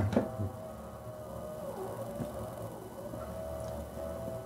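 Quiet room tone in a pause between words: a steady low hum with a faint thin whine that fades in and out, and a few soft clicks.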